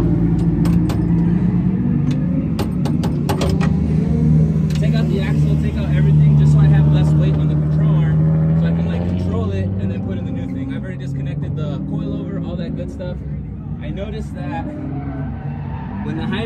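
A car engine running steadily. It grows louder about six seconds in and then eases off. A few sharp clicks come in the first seconds.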